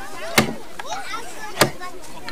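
Hand axe chopping into a wooden log: two sharp strikes about a second and a quarter apart, part of a steady chopping rhythm.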